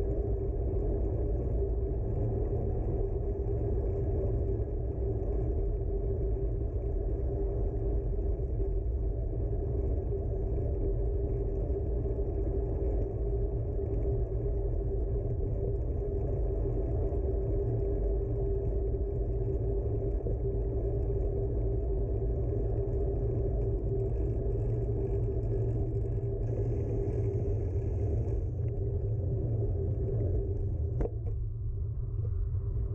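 Steady wind and road rumble on a handlebar-mounted camera as a bicycle rolls along asphalt, with a steady hum in it and a brief higher hiss near the end.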